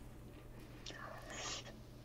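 A pause in conversation: a faint breathy sound from a speaker about a second in, like an intake of breath or a whisper, over a low steady hum.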